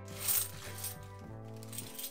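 Background music over the rustle of a plastic coin bag and the clink of 50p coins being tipped out of it into a hand. The rustle is loudest in the first second.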